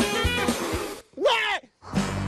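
Edited-in background music with guitar and a steady beat, which cuts out about a second in for a brief cry that falls in pitch, then starts again.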